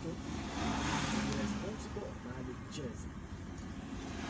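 Minibus engine and road noise from inside the cabin, with a swell of noise about a second in, and people talking in the background.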